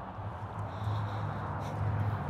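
Low, steady hum of a vehicle engine running nearby, growing louder about half a second in.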